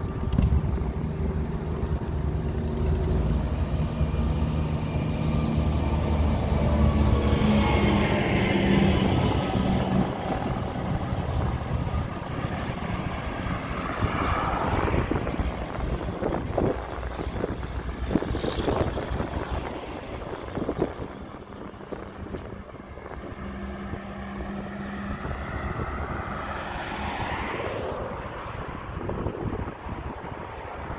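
Road traffic passing close by on a two-lane street. A steady, heavy engine rumble fills the first third, then cars and a concrete mixer truck go past one after another, each swelling and fading away with tyre noise.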